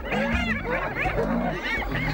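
Spotted hyenas giggling: many high, arching calls overlap one another without a break, with some lower calls among them.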